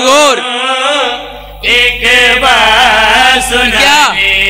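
Men's voices chanting a melodic recitation through a microphone and loudspeakers, the pitch wavering up and down. The chant fades briefly about a second in and comes back loud at about a second and a half, with a low steady hum underneath.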